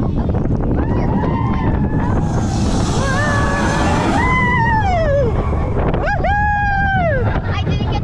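Small family roller coaster running along its track with a steady rumble and wind on the microphone. Over it come children's long, high 'woo' screams, each sliding down in pitch at the end: several overlapping through the middle and one more near the end.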